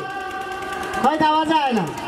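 A man's voice over a stage PA. The first second is quieter, then about a second in comes one drawn-out phrase whose pitch rises, holds and slides down.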